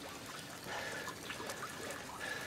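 Faint water trickling and sloshing, with a few light splashy ticks.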